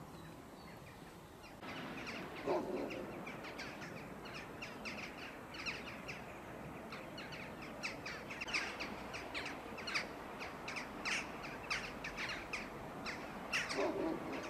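Many small birds chirping in quick, irregular calls. The chirping starts suddenly about two seconds in, with a lower, harsher call then and again near the end.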